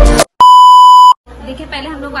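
A single loud electronic beep: one steady tone about three quarters of a second long that cuts off sharply, right after the end of a music track.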